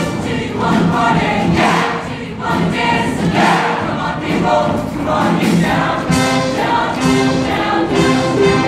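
Mixed-voice show choir singing in full chorus over instrumental backing with a steady beat.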